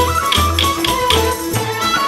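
Bulgarian folk dance music with a brisk, steady beat: a melody line over repeating bass notes, punctuated by sharp percussion strikes.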